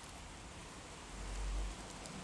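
Faint handling noise as a printed circuit board is picked up off a bench, with a soft low bump about a second and a half in.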